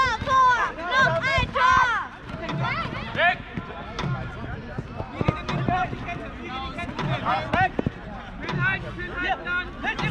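Jugger players shouting to each other during play, loud calls that rise and fall in pitch, thickest in the first two seconds. Underneath, a low drum beat about every second and a half keeps the match's count of stones.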